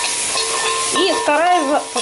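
Shredded onion and carrot sizzling as they fry in oil in a pan, stirred with a spatula: a steady frying hiss.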